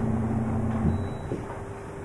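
Steady low background hum and noise. A faint held tone stops just under a second in, and a few faint soft knocks follow.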